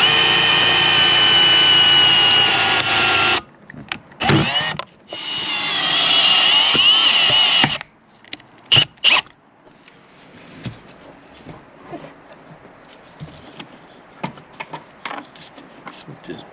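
A cordless Milwaukee power tool cutting through the windshield's urethane bead. It runs with a steady high whine for about three and a half seconds, then gives a couple of quick blips and runs again for about two and a half seconds, its pitch wavering under load. Two short blips follow near the middle, and then only faint handling clicks.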